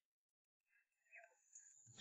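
Near silence: a dead gap with only a very faint trace of sound a little past the middle.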